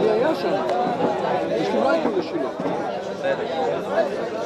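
The din of a yeshiva study hall (beit midrash): many men studying Torah aloud at once, their overlapping voices merging into a steady, unbroken hubbub with no single voice standing out.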